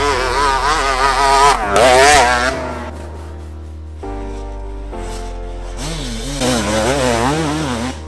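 Enduro motorcycle engine revving up and down over electronic music with a steady bass line. The engine is loudest about two seconds in and again near the end.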